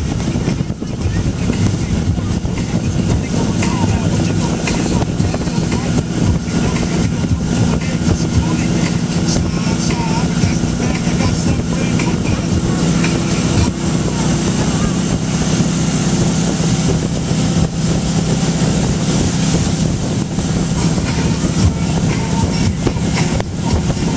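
Towboat's engine running steadily at speed, with the rush of its wake and wind buffeting the microphone.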